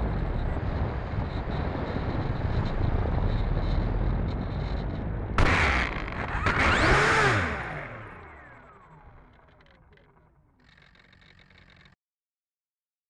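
Electric motor and propeller of an E-flite Turbo Timber RC plane with wind rushing past on a low approach, then a sudden bump about five seconds in as the wheels hit the asphalt. The motor briefly revs up and back down, and the propeller winds down to a stop, the sound falling away to almost nothing.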